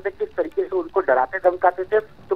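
A man's voice speaking Hindi over a telephone line, narrow and thin in sound, talking without pause.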